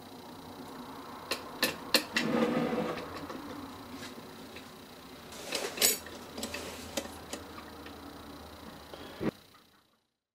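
Small steel parts of a one-arm bandit's payout mechanism being handled: light metallic clicks and clinks as payout-slide springs are hooked on, with a brief scraping rustle. The sound cuts off suddenly near the end.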